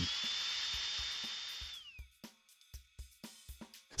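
Compressed drive air hissing through a dental handpiece hose and its in-line pressure gauge, with a steady high whistle that rises at the start. About two seconds in the whistle glides down and the hiss fades away as the air stops.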